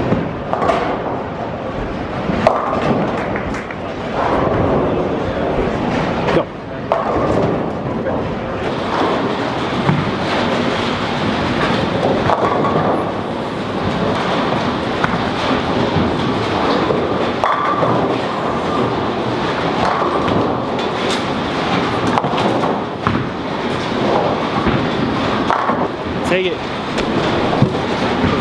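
Busy bowling-centre ambience: bowling balls rolling down the lanes and pins clattering now and then, over a steady murmur of many voices.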